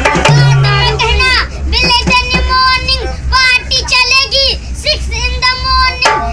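A boy singing in a high voice with long, wavering held notes, accompanied by hand strokes on a dholak, a two-headed rope-tensioned barrel drum. A deep booming drum stroke comes in the first second, and the drumming thins to scattered strokes once the singing takes over.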